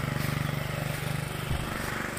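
A small engine running steadily, a low hum with a fast, even pulse.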